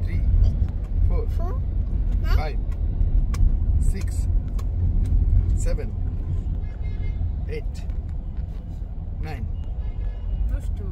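Steady low road rumble inside a moving vehicle's cabin, with a few brief voice sounds and light clicks and rattles over it.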